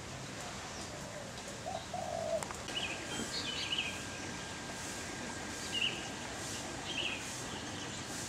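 Birds calling: a couple of low cooing notes in the first few seconds, then short high chirps at intervals through the rest.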